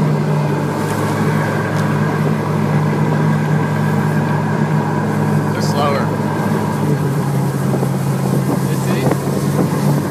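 Outboard motor of a Majek Redfish Line skiff running steadily as the boat moves through ankle-deep marsh water. Its note drops slightly about seven seconds in.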